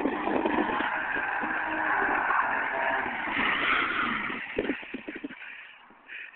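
Nissan 300ZX (Z32) V6 engine held at high revs while the car drifts on snow, heard from a distance. The sound fades out about five seconds in.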